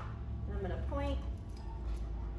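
A woman's voice speaking a few short, quiet words over a steady low hum.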